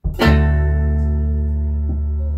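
Electric guitars and bass guitar striking one chord together straight after a count-in, with a sharp, bright attack, then left ringing as a single sustained chord with a heavy low end, fading only slightly.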